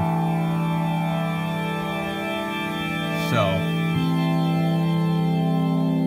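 Synthesis Technology E370 quad morphing VCO playing a sustained four-voice wavetable chord of steady held tones. The chord changes about four seconds in as the chord voltages step.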